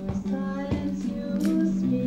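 A song being played: a woman singing a slow melody over held, sustained accompanying notes, with a few short clicks in the room.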